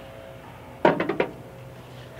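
A glass jar set down on a diamond-plate metal tray: a quick run of four or five clinks and knocks about a second in, over a faint steady hum.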